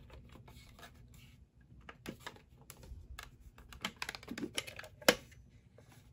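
Hard plastic toy rice cooker being handled: a run of light plastic clicks and taps, then one sharp click about five seconds in as its hinged lid is unlatched and swung open.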